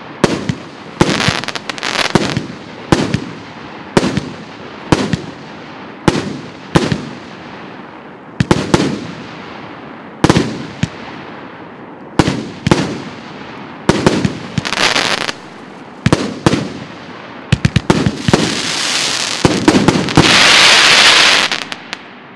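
A 36-shot, 1.25-inch consumer firework cake firing, with a sharp report about once a second, each followed by a fading crackling tail. Near the end the shots come in a rapid cluster and merge into a loud, dense crackling finale that cuts off about half a second before the end, leaving a short fading echo.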